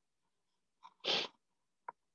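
A single short explosive burst of breath from a person about a second in, then a sharp click near the end.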